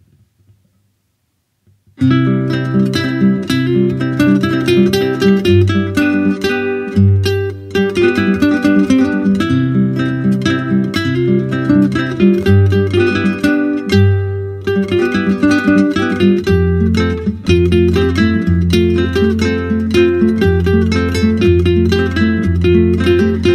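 Near silence for about two seconds, then instrumental music starts suddenly: quick repeated plucked-guitar notes over held bass notes that change every second or two.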